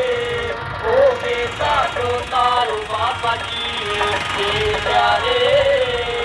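Devotional music with a singing melody played loud through a loudspeaker, over the steady low running of a diesel tractor engine.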